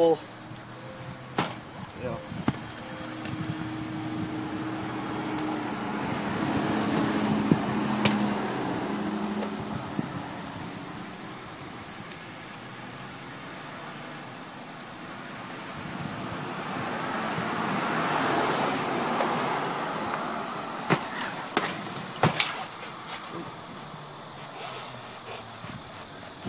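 Insects chirping steadily in a fast, even pulse, with a few sharp knocks on steel roof panels as a person moves about and sits down on them. Twice, a rushing sound swells up and fades over several seconds.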